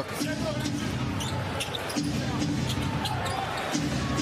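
In-game arena sound of NBA basketball: the ball bouncing on the hardwood court amid steady crowd noise in the arena.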